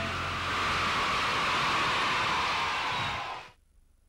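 A steady rushing noise after the song ends, which cuts off suddenly about three and a half seconds in.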